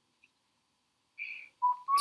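Near silence for over a second, then a short hiss and a person starting to whistle one steady, slightly wavering note near the end.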